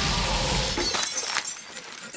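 A noisy crash or shattering from a film soundtrack, dying away over the first second, followed by a sharp knock about 1.4 seconds in.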